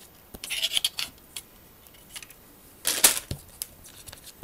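Plastic model-kit sprues being handled against their clear plastic bag and paper instruction sheet: a short burst of rustling and clicking about half a second in, then a louder rustle about three seconds in.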